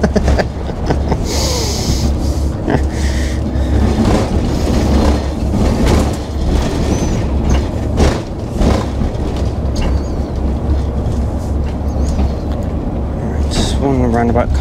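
Cab interior of an Irizar i6 coach on the move: a steady low engine and road rumble, with scattered knocks and rattles from the cab. There is a brief hiss about a second and a half in.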